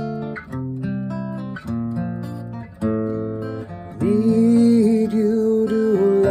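Acoustic guitar, tuned down a whole step, playing a repeating chord progression, with a new chord struck about once a second and left to ring. About four seconds in, a louder held note with a wavering pitch comes in over the guitar.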